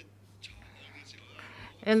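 A pause in a man's speech at a microphone, with faint breathy noise over a low steady hum. His voice comes back in near the end.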